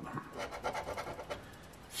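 A coin scraping the coating off a scratch-off lottery ticket: a run of short scratching strokes that die down in the second half.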